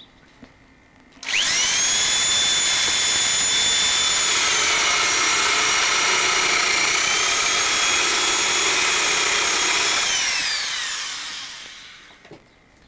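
Corded electric drill boring into a wooden board. The motor whines up suddenly about a second in and its pitch sags for a couple of seconds midway as the bit cuts into the wood, then recovers. Near the end it is switched off and winds down, falling in pitch.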